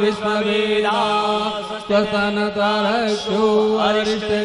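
A voice chanting a Hindu wedding mantra in a sliding, sung line over a steady held drone.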